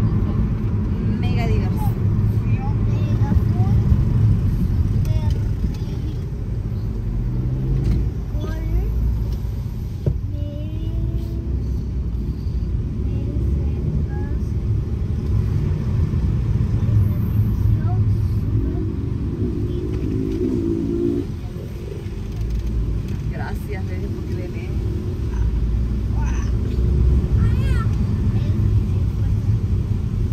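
A car being driven, heard from inside the cabin: a steady low engine and road rumble, with faint voices at times.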